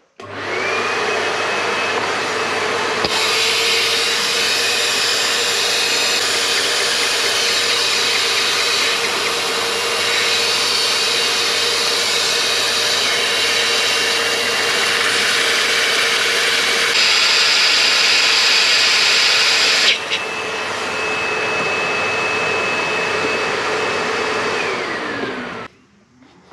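Vacuum cleaner motor running steadily with a whine, its nozzle held on the power-steering reservoir so the suction stops fluid spilling while the valve is out. The tone shifts a few times as the nozzle seal changes, and near the end the motor winds down with a falling whine.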